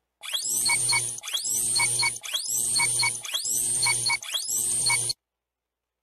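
Quiz countdown timer sound effect: five identical one-second cycles, each opening with a rising sweep. It cuts off suddenly about five seconds in, when the time is up.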